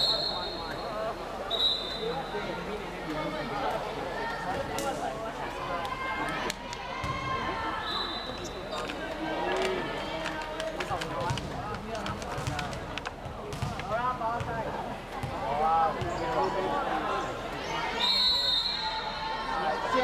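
Volleyball being bounced and struck on a hardwood court, with players and onlookers calling out. Several short, high-pitched blasts of a referee's whistle come at the start, about eight seconds in, and near the end, just before the serve.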